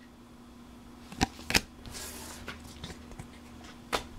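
Pokémon trading cards being handled and set down on a wooden tabletop: two sharp taps a little over a second in, a brief papery rustle around two seconds, and another tap near the end, over a faint steady hum.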